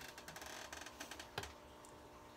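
Faint, quick clicking and rustling of a plastic NECA Raphael action figure being handled, with one sharper knock about one and a half seconds in as it is set down on a wooden table.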